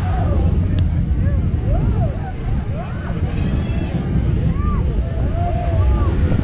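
Roller coaster train climbing a chain lift hill, heard from on board as a steady low rumble. Short high voices call out above it now and then.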